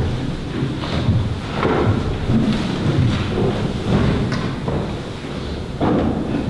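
Low, rumbling room noise with a few soft knocks and rustles as a book is handled at a lectern microphone.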